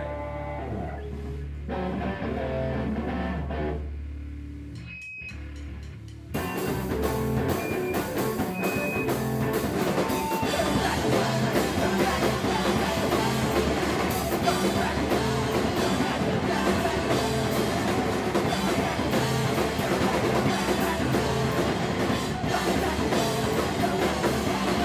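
Rock band playing live: for the first six seconds a held low note with a few scattered electric guitar notes, then the drums and guitars come in together and the full band plays on.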